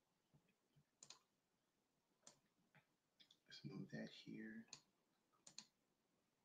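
Near silence with a handful of faint clicks, typical of a computer mouse, and a brief faint murmur of a man's voice a little past halfway.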